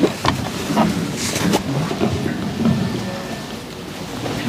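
Faint, indistinct voices of people in the room, mixed with rustling and a couple of brief scrapes or knocks from handling near a clip-on microphone in the first second and a half. The sound fades gradually.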